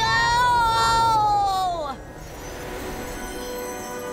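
A cartoon boy's voice giving one long, high-pitched shout that sinks in pitch and breaks off about two seconds in. Quieter background music with held notes follows.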